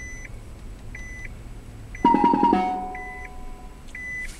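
In-cabin beeps from a Nissan Leaf prototype's automatic parking system, a short beep about once a second, then about halfway a loud chime of several tones that rings on for over a second, signalling that the self-parking manoeuvre is finished.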